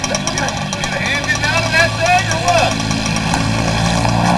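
A vehicle engine idling steadily, with indistinct talking over it from about one to nearly three seconds in.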